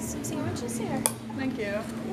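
Café background chatter with a single sharp clink of crockery about halfway through.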